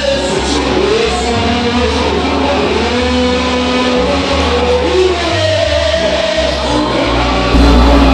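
Live church worship music: amplified singing into microphones over an accompanying band with a steady bass line. A little before the end the sound jumps louder.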